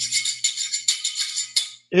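Hand shaker played in a steady rhythm of about five strokes a second over a faint low hum, cutting off suddenly near the end.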